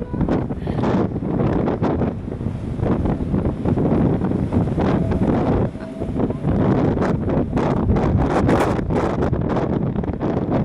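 Wind buffeting the camera microphone, loud and gusting, with a constant low rumble.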